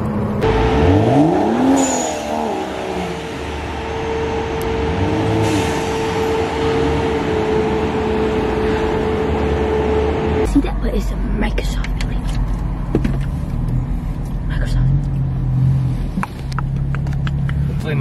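BMW M235i's tuned turbocharged inline-six revving and accelerating, rising in pitch in the first couple of seconds, with brief hissing turbo blow-off valve releases about 2 and 5.5 seconds in. About ten seconds in the sound changes abruptly to a lower, steadier engine note.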